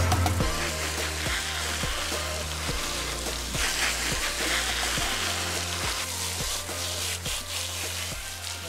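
Garden hose spray nozzle hissing steadily as it sprays water onto a horse and the wet ground. Background music with a steady beat plays under it.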